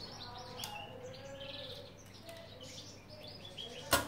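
Faint chirping of small caged songbirds, short repeated high chirps throughout. A single sharp click sounds just before the end.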